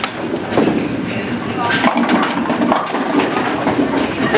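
Bowling ball rolling down a lane toward the pins, heard over the general noise of a bowling alley with people talking.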